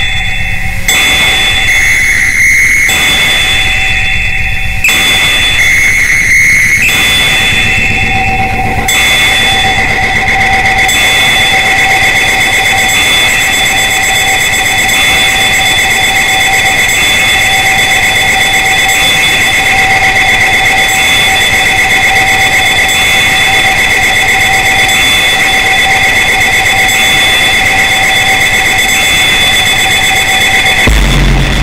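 Electronic house/techno track in a breakdown: high, steady synth tones are held throughout. Under them a bass pulses in blocks about every two seconds for the first nine seconds, then drops away.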